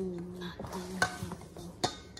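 A utensil stirring batter in a stainless steel mixing bowl, with two sharp clinks of metal on the bowl, about a second in and near the end. A voice holds a low hum for most of the time underneath.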